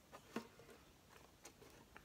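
Near silence, with one faint click about half a second in and a few fainter ticks, from a hand handling a clear plastic tank and its lid.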